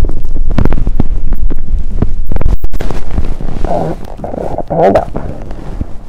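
Loud rubbing and rustling with scattered knocks, clothing and bodies shifting right against the microphone as an adult repositions a child in her lap, easing off after about three seconds. Two short wordless voice sounds come near the end.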